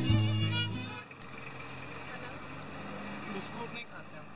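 Music stops about a second in. It gives way to the steady running and road noise of a car driving slowly through a busy street, heard from inside the cabin, with street voices under it.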